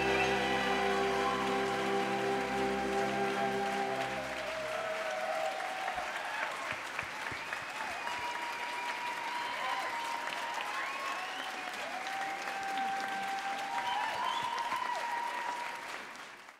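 Concert audience applauding over the orchestra's last held chord, which ends about four seconds in; the clapping carries on with some higher calls rising over it.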